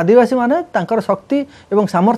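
Speech only: one person talking without a break, with no other sound.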